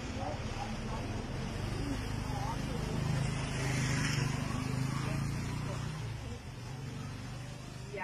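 A vehicle passing on the street, its rumble and tyre hiss rising to a peak about four seconds in and then fading, with faint voices underneath.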